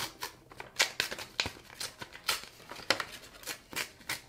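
Paper rustling and crinkling as a small accordion-folded instruction leaflet is unfolded and handled, in a run of short, irregular rustles.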